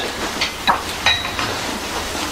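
Fabric backpack being picked up and handled: rustling, with a few light clicks and a short clink about a second in.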